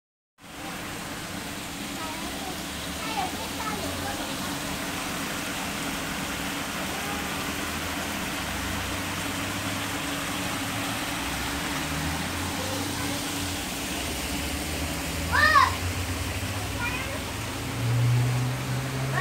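Small garden water feature splashing steadily as water pours off a stone ledge onto pebbles, with brief children's voices, one louder call a little before the end.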